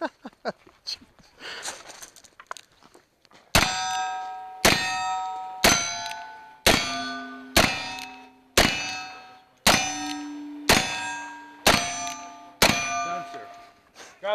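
Ten revolver shots, about one a second, fired from a pair of black-powder revolvers. Each shot is followed by the ringing of a struck steel target. The shots start after a few seconds of quieter shuffling.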